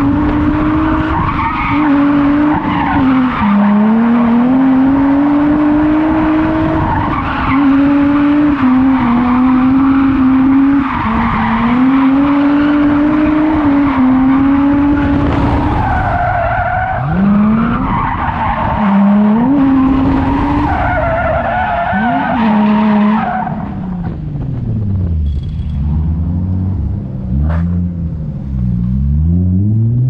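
Infiniti G35's V6 engine held high in the revs while the car drifts, its pitch dipping and climbing, with tyres squealing on the pavement. About three-quarters of the way through, the tyre squeal stops and the engine drops to lower revs, rising and falling several times.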